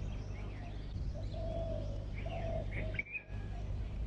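Birds calling: a few short, low-pitched calls in the middle and faint higher chirps, over a steady low hum.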